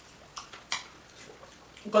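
A few light, separate clinks and taps of tableware as food is taken from a pot at the table.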